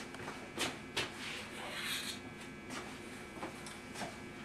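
Faint footsteps and the rustle of upholstery cording being picked up and handled, with a couple of sharper knocks about half a second and a second in.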